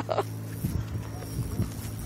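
Faint, short bursts of a man's laughter over a steady low hum.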